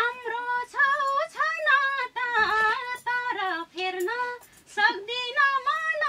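A woman singing a Nepali lok dohori folk song in a high voice, in ornamented phrases with short pauses between them.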